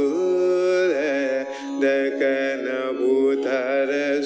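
Carnatic vocal rendition played from a recording: a singer's voice sliding and oscillating through ornamented phrases (gamakas) over a steady drone.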